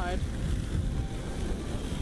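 Wind buffeting the microphone outdoors: a steady low rumbling noise.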